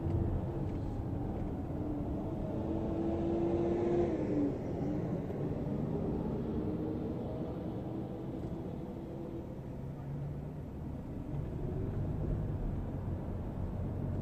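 Car running in city traffic, heard from inside the cabin: a steady low engine and road rumble with a humming tone that dips in pitch about four seconds in.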